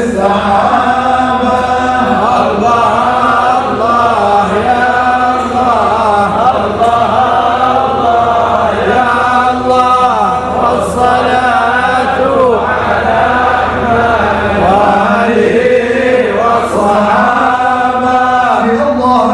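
A large group of men chanting a devotional hymn together, their voices carrying one steady sung melody.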